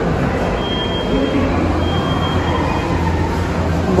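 Steady low hum with indistinct background voices, and a faint thin high tone sounding briefly twice.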